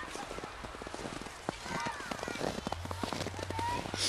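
Footsteps scrunching in snow: a fast, irregular run of crunches as someone walks through it.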